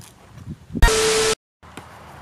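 Faint outdoor ambience with a couple of soft thuds, broken a little under a second in by a thump and half a second of loud static-like hiss with a steady tone through it. The hiss cuts off abruptly into a moment of dead silence at a video edit.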